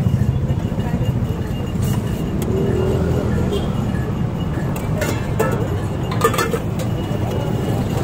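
Busy street-side ambience: a steady low rumble, with voices in the background and a few short clicks and clatters.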